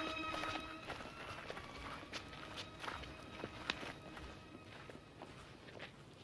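Footsteps of several people walking on stone steps, an irregular patter of light steps. A held music note fades out just after the start.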